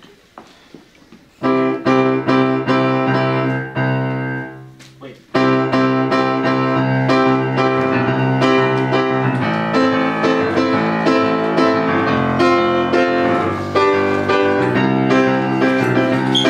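Upright piano played: a chord struck about a second and a half in and left to ring and die away, then steady chord playing from about five seconds on.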